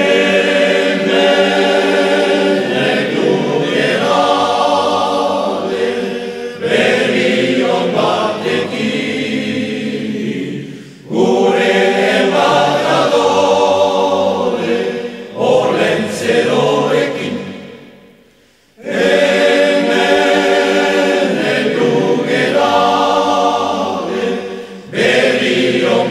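Choir singing a Basque Christmas song in long phrases, with brief pauses between phrases about eleven and eighteen seconds in.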